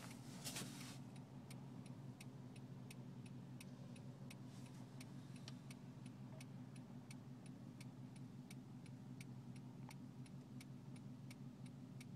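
Turn-signal indicator in a Honda CR-V's cabin clicking steadily at nearly three clicks a second, over a faint low hum from the car idling at a stop. There is a brief rustle shortly after the start.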